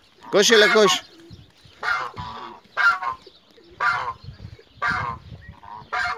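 Domestic geese honking: one longer, louder call just after the start, then short honks about once a second.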